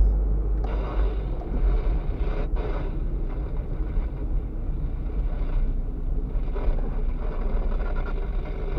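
Inside a moving car's cabin: a steady low rumble of engine and road noise, with an even hiss of tyre and wind noise that comes up about half a second in.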